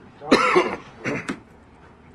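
A person coughing: one loud cough followed about half a second later by a shorter double cough.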